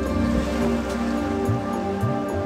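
Background music with soft, sustained held notes.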